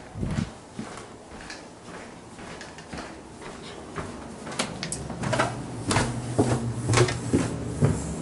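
A door being handled and footsteps going down basement stairs: a low thud just after the start, then from about halfway through a series of knocks and footfalls, over a low steady hum that comes in at about the same time.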